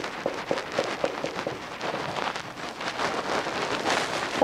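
Dry-erase marker writing and drawing on a whiteboard: a busy run of scratchy taps and strokes, with a few short squeaks in the first second and a half.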